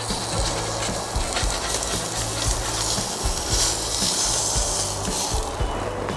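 Salmon fillet sizzling on the hot cast-iron grate of a propane gas grill as it is turned over with a metal spatula, with a few short knocks and scrapes of the spatula. A steady low hum runs underneath.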